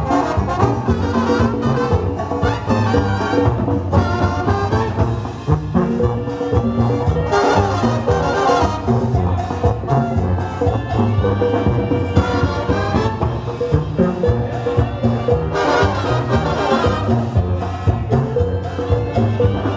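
A Mexican banda brass band playing live: trumpets and trombones carrying the melody in chords over a sousaphone bass line that keeps a steady beat.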